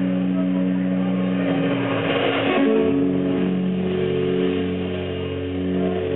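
Live rock band with electric guitars ringing out long held chords, moving to a new chord about halfway through.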